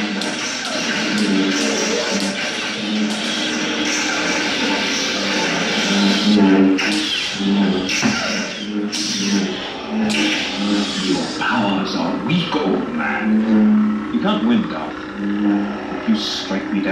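Sound-effect lightsabers humming steadily and clashing with sharp strikes in a choreographed duel, over music, with voices mixed in.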